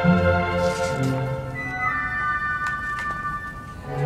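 A symphony orchestra is playing sustained chords, with low notes at first. High held notes enter after about a second and a half, and the music grows softer near the end.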